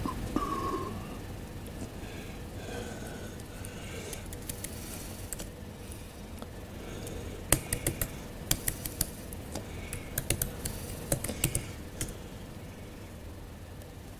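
Laptop keyboard keys clicking in a quick irregular run of taps from about halfway through, in a quiet room.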